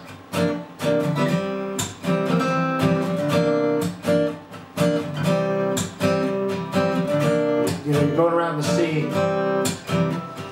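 Steel-string acoustic guitar strummed in a choppy funk rhythm, vamping on ninth and seventh chord shapes with quick, sharp strum strokes and brief gaps between the chords.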